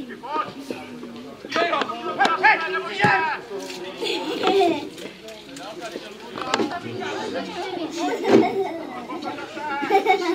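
Voices calling out and shouting across an amateur football pitch during play, with a sharp knock about three seconds in and another near the end.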